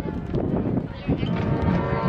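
Marching band brass playing long held notes. There is a brief lull about a second in, then a new sustained chord comes in.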